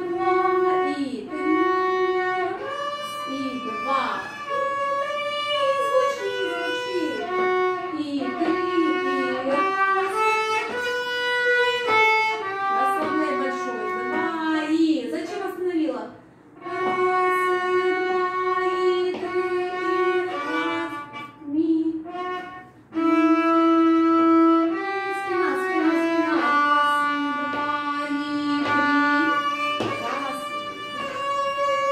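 A student violin playing a bowed passage of sustained notes that move from pitch to pitch, with short breaks about halfway through.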